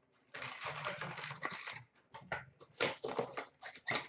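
Hockey card packs and cards being handled: a long rustle of paper and foil wrapper, then a quick run of short scrapes and taps as cards are slid and stacked.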